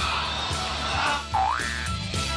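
Background music with a comic sound effect laid over it: a quick pitch glide that dips and then rises steeply, like a cartoon boing, about two-thirds of the way through.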